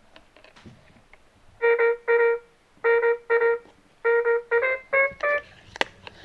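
My First Sony EJ-M 1000 toy playing its electronic trumpet sound for the trumpet picture card. It is a short tune of eight notes starting about a second and a half in: two pairs, then four quicker notes stepping up in pitch. Faint clicks of the toy being handled come before it.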